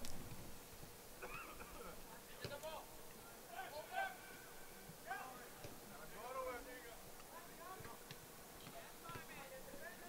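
Faint, distant shouts and calls from soccer players on the field, scattered through, over a faint steady hum, with a couple of faint knocks.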